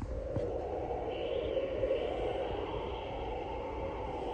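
Steady droning sound effect from the Frankenstein mask's built-in sound box, with no clear rhythm or pitch changes.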